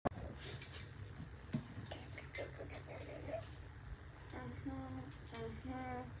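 Clicks and rustles of handling as a trombone is picked up and readied, then four short held notes of about the same low-middle pitch in the last two seconds, the first trombone sounds or warm-up buzzes before playing.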